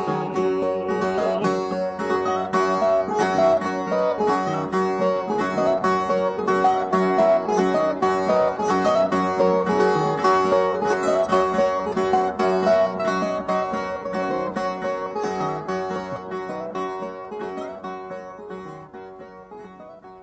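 Brazilian steel-string violas (viola nordestina) playing a fast plucked instrumental passage of cantoria music, fading out over the last several seconds.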